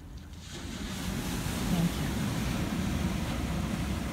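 Beach ambience: a rushing noise of wind and surf swells up about half a second in and holds steady over a low rumble.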